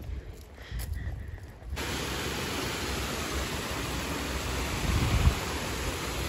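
Water rushing steadily over a small weir in a river channel, a continuous noise that starts abruptly about two seconds in.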